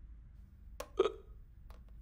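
A single short hiccup from a drunk man, about a second in.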